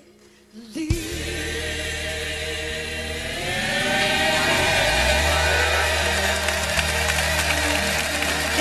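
Old-school gospel music: after a brief quiet gap, a new song starts about a second in with held chords and a choir singing, growing louder and fuller about three and a half seconds in.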